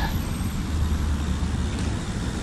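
Steady low rumble of a recumbent trike rolling along a concrete path, with wind on the microphone.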